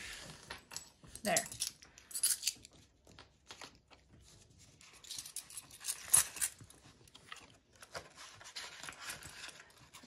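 Coins clinking and a plastic zip cash envelope rustling and crinkling as two-dollar coins are stuffed into it and it is pressed shut. The sound is a run of scattered clicks and rustles, busiest in the second half.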